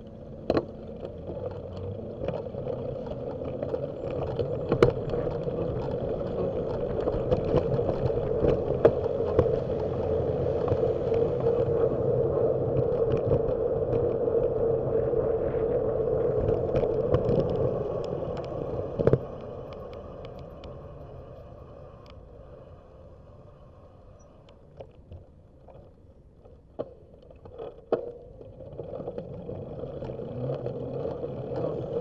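Road and traffic noise picked up by a bicycle-mounted camera, with no voice. It swells over the first few seconds, holds steady through the middle, then fades about two-thirds of the way in, with scattered sharp clicks and knocks throughout.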